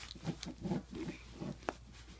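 A person making several short, low vocal sounds in quick succession, with a sharp click near the end.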